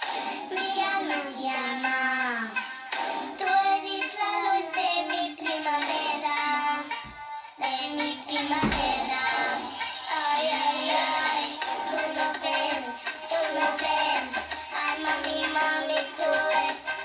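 A child singing a pop-style song over a backing music track, with a short break in the melody about halfway through and a single low thump just after it.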